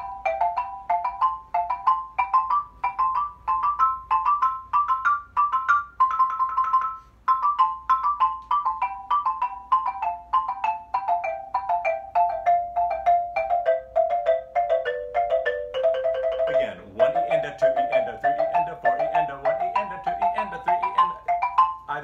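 Rosewood-bar xylophone played with mallets in double stops, two notes struck together: a quick run of paired notes climbing step by step, a short roll on a high pair about six seconds in, then the pairs working back down to a low roll about sixteen seconds in, and the exercise carrying on.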